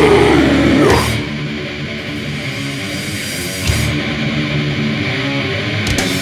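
Death metal recording: the full band plays for about a second, then the drums drop out and distorted electric guitar carries on with little else. The full band comes back in at the very end.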